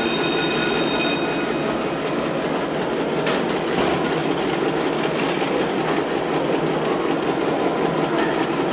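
An electric school bell rings with a steady tone that stops about a second in, followed by a steady rumbling noise.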